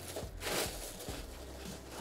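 Corn flakes rustling in a glass bowl as a ball of shortcrust biscuit dough is rolled through them by hand, a little louder about half a second in.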